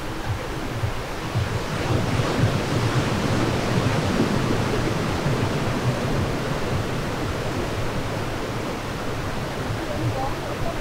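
Ocean surf breaking on a sandy beach, a steady wash of noise that swells a little about two seconds in, with wind rumbling on the microphone.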